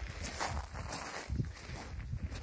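Footsteps on shore ground strewn with small shells and seaweed, two steps about a second apart.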